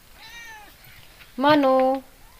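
A mother cat with newborn kittens meowing, angry. There is a faint, higher call about a quarter of a second in, then a loud, drawn-out meow in the last half second.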